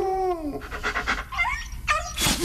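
Dog barking and whining sounds coming from a man who has eaten a dog bark mint, played as a comic gag. A long whine falls in pitch at the start, then shorter yelps follow about a second and a half in.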